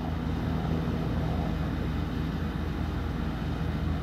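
Distant airplane engine, a steady low drone.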